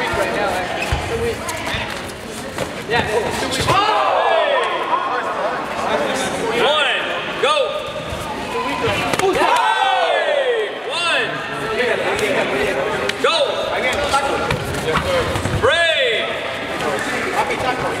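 Men shouting short calls across a large hall, over thuds and scuffs of kicks and footwork from a sparring bout on foam mats.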